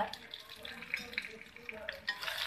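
Dried red chillies, coriander seeds and freshly added green leaves sizzling and crackling in a hot pan as they fry.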